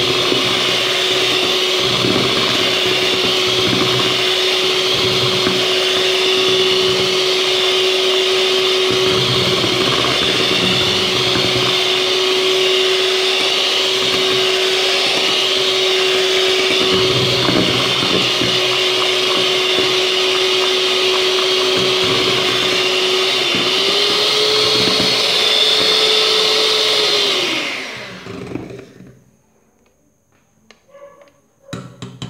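Imarflex electric hand mixer running steadily with a motor whine, its beaters whipping all-purpose cream and condensed milk in a stainless steel bowl. About 23 seconds in the whine steps up in pitch as the speed goes up, and about 28 seconds in the mixer is switched off and winds down.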